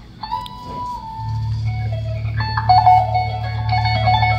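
A live band with electric guitar lead: the guitar holds one high note for under a second, then plays quicker single-note lines from about halfway through, over a steady low bass that comes in about a second in.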